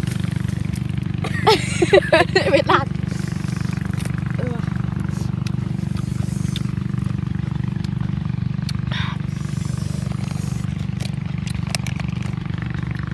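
A motor running with a steady low hum, unchanging throughout.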